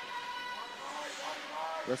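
Faint ice-rink ambience: distant voices under a steady high hum.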